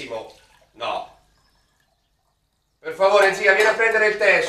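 A voice trails off, followed by a brief sound about a second in. After a second and a half of complete silence, a voice starts again about three seconds in.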